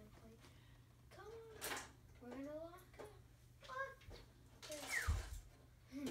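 Children's voices, faint and indistinct, in short snatches as they play on the floor. About five seconds in there is a brief louder rustle with a low thump.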